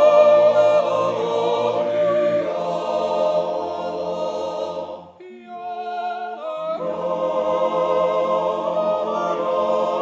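Swiss men's yodel choir singing a Jodellied a cappella in close harmony, holding long sustained chords. About five seconds in, the full choir drops away briefly to a few voices, then the whole choir comes back in.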